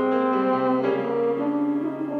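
French horn and piano playing classical music together, with sustained notes that move to new pitches through the passage.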